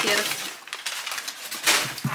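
Crumpled brown kraft packing paper rustling and crinkling as it is handled and pulled out of a cardboard shipping box, with a louder crinkle near the end.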